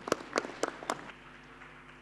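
Light applause from a small audience, a few distinct hand claps in the first second that thin out and die away.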